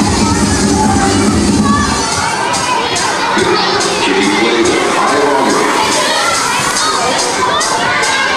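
A crowd of children shouting and cheering over loud dance music. The music's bass drops out about two seconds in, leaving the voices over a regular high ticking beat.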